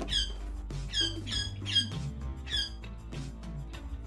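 A pet's short, high, falling squeaky chirps, repeated in quick clusters and stopping after about three seconds, over background music with a steady low bass.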